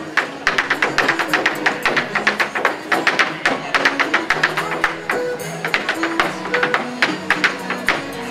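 Irish step dancing in hard shoes: fast, sharp clicks and taps of the shoes on a portable wooden dance board, several strikes a second, over recorded music playing through a small speaker.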